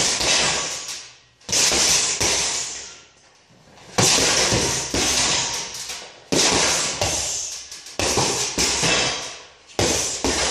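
Punches landing on a heavy bag, about nine hits in loose combinations, each one followed by a bright rattle from the bag's hanging chain and steel stand that dies away over about a second.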